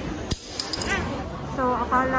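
A sharp click, then a brief high jingling ring lasting about half a second.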